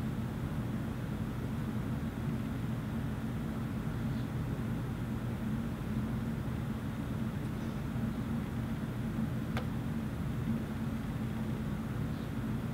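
A steady low hum of background room noise, with one faint click near the end.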